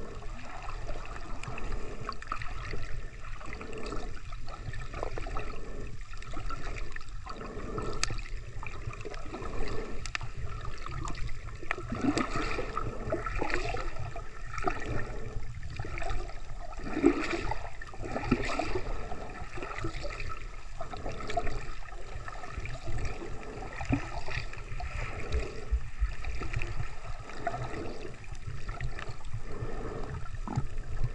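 Water gurgling and sloshing around a camera held in shallow sea water, a steady wash of noise broken by many small irregular gurgles.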